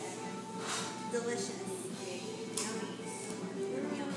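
Background music playing steadily, with indistinct voices and a couple of brief light clicks.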